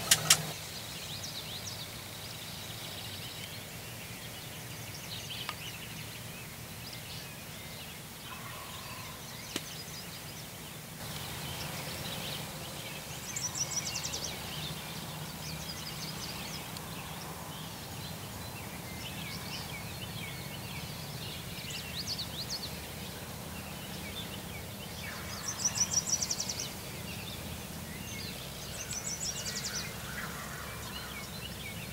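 Wild turkey gobbling three times: one rapid rattling gobble about halfway through, then two more near the end.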